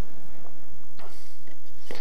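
Two short clicks, about a second apart, from hands handling a steel hollowing tool in its articulating holder arm, over the hum of a quiet workshop.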